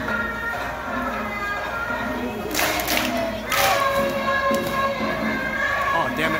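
Japanese festival dance music with a sung melody, playing over the crowd's noise. Two short, sharp bursts of noise stand out a little after halfway, about a second apart.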